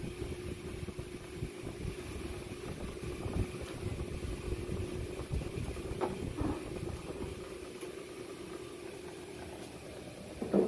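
1960 Kelvinator W70M top-loading washer in spin, motor and basket running with a steady hum over a low rumble. The load has been rebalanced and now spins smoothly.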